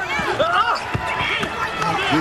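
Basketball court sounds: sneakers squeaking on the hardwood, a ball bounce about a second in, and arena crowd noise underneath.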